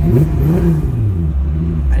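Mk1 Jetta's 3.6-litre VR6 engine idling, with a short rev about half a second in: the pitch rises and falls back to idle within about a second. Heard from inside the cabin.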